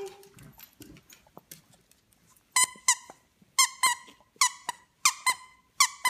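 Squeaker inside a plush dog toy squeezed repeatedly, beginning about two and a half seconds in: short, sharp squeaks in quick pairs, one pair after another at an even pace.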